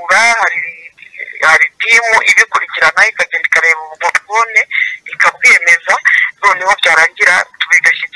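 Speech over a telephone line: a voice talking steadily, sounding thin and narrow.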